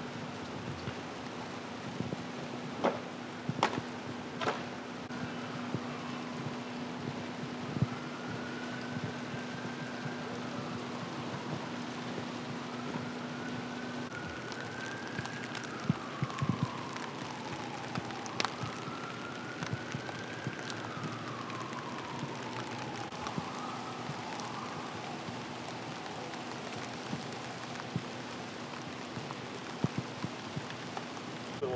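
Steady rain on a wet street, with a distant emergency-vehicle siren wailing, its pitch slowly rising and falling, from a few seconds in until near the end. A low steady hum cuts off suddenly about halfway through, and a few sharp taps are heard in the first few seconds.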